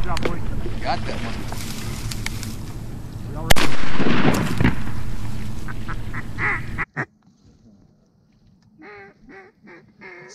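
A single shotgun blast about a third of the way in, over a loud steady rush of noise. After an abrupt break, a rapid series of duck quacks near the end.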